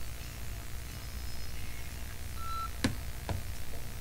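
Steady low hum from an idle electric guitar rig, with a short high electronic beep a little past halfway and two sharp clicks near the end.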